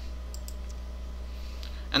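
A few faint computer mouse clicks over a steady low electrical hum.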